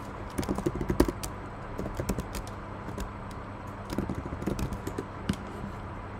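Typing on a computer keyboard in three short runs of keystrokes.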